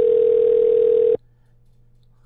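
Telephone ringing tone heard over a phone line as the call rings through: one loud, steady tone that cuts off about a second in. A faint line hum follows.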